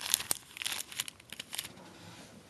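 Plastic packaging of small glitter packets crinkling as it is handled, a quick run of crackles that thins out after about a second and a half.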